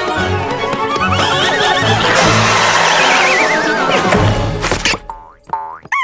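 Cartoon soundtrack music with comic sound effects, including a long wobbling whistle-like tone that falls in pitch. The music cuts off about a second before the end, followed by a short falling glide.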